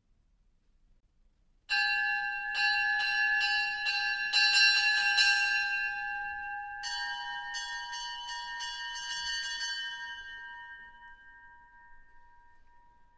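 A bell in an opera orchestra struck repeatedly, about two or three strokes a second, starting about two seconds in after near silence. Near the middle a second run of strokes begins at a slightly higher pitch, and the ringing dies away near the end.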